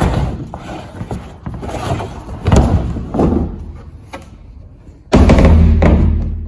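Large plastic screw-on lid of a polyethylene underground water tank being turned off by hand, its rim scraping in the threads, with two loud knocks midway as it works loose. A sudden loud, steady low hum starts about five seconds in.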